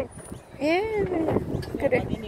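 A child's high voice laughing and playing: one drawn-out call that rises and then falls, starting about half a second in, with softer voice sounds after it.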